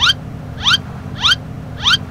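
A short rising chirp, repeated four times exactly alike at an even pace of about one every 0.6 seconds, like a looped sound effect.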